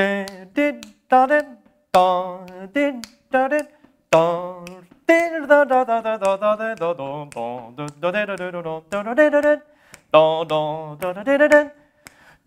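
A man scat-singing a wordless jazz solo line, a run of short phrases with wavering pitch broken by brief pauses, ending in a short laugh.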